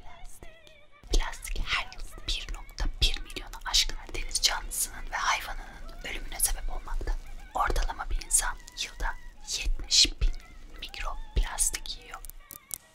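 A woman whispering close into a microphone, ASMR style, with sharp sibilant hisses, over faint background music.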